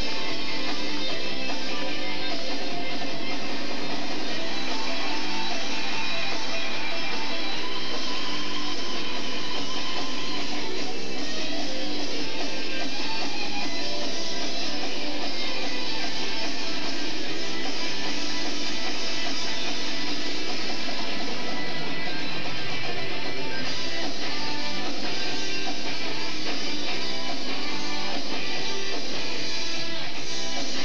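Guitar-led music with strumming, the pair's skating program music, playing steadily with no commentary over it.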